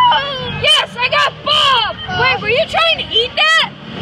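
High-pitched, sped-up character voices chattering too fast to make out words, over a low steady hum.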